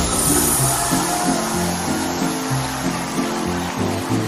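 Instrumental band music: sustained chords changing every half second or so over a steady bass line, without singing.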